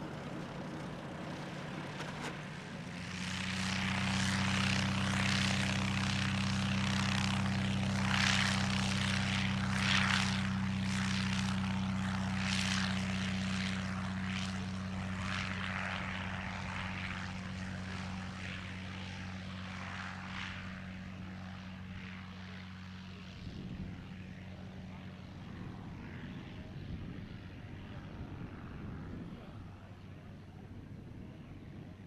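Single-engine propeller trainer plane opening up to full throttle about three seconds in for its takeoff run: a steady engine note with propeller noise that fades as the plane rolls away down the runway and lifts off.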